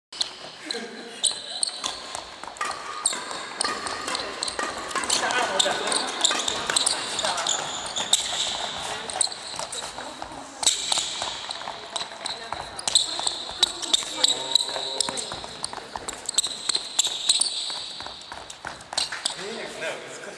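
Court shoes stepping quickly on a wooden gym floor in a footwork drill: rapid footfall thuds with many short, high rubber squeaks. Voices talk in the hall.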